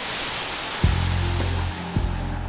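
Steady hiss and noise of an old archival film soundtrack fading in. A click comes a little under a second in, and after it a low steady hum joins.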